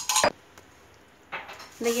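A sharp clink of a metal kitchen utensil against a pan or vessel at the start, then a quiet stretch and a short noise about a second and a half in. A woman's voice begins near the end.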